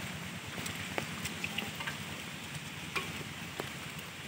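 Many live climbing perch (koi) wriggling and splashing in a shallow basin of water as hands stir through them: a steady crackling patter with scattered sharp clicks.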